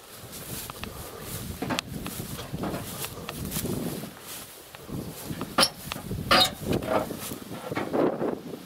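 Rustling of tall grass and footsteps as people work around an old car body, with a few short sharp knocks or scrapes, the strongest two in the second half.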